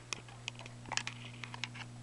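Irregular light clicks and taps of a handheld camera being handled and shifted, about a dozen in two seconds, over a steady low electrical hum.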